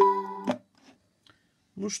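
Electronic music played through a homemade amplifier with GT703B germanium output transistors into an old Soviet 6AS-2 speaker, with notes struck about twice a second; the music cuts off suddenly about half a second in, leaving near silence.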